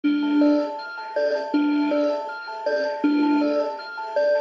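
Background music: a repeating melody of short, clear pitched notes, each starting sharply and fading, a new note about every half second.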